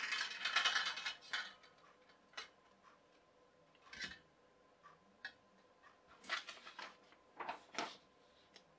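Wire storage shelf and chrome tension pole clinking and rattling as the shelf is slid onto the pole, a dense rattle in the first second or so, then scattered light clicks and taps.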